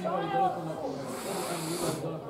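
People's voices talking near the microphone, with a short hissing noise about a second in that lasts under a second.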